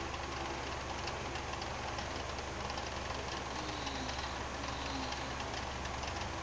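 Film soundtrack heard through a TV speaker and re-recorded on a phone: a steady rushing noise with a constant low hum underneath and faint sliding tones in the middle.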